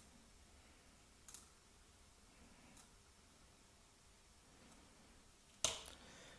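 Near silence with a few faint clicks, and a sharper click near the end followed by a brief rustle, as a crocodile clip is handled and set down on a wooden bench.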